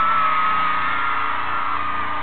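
Concert crowd screaming over the band's amplified music. One long, high-pitched scream is held close to the recorder throughout.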